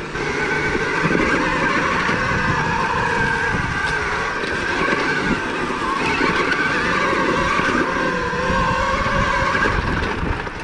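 2023 KTM Freeride E-XC electric dirt bike underway, its motor and drivetrain whining in several tones that rise and fall in pitch with speed, over steady rattle and tyre noise from the rough dirt trail.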